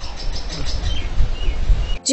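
Outdoor background noise, a steady low rumble and hiss, with a few short bird chirps.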